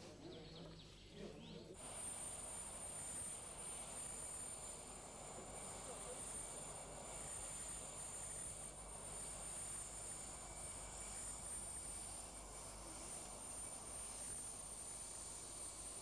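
Aircraft engines running on an airport apron: a steady high-pitched whine over a rushing noise that cuts in about two seconds in.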